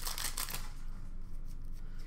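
Upper Deck hockey cards being handled and slid through the fingers, a few quick paper rustles in the first half second, then a faint low hum.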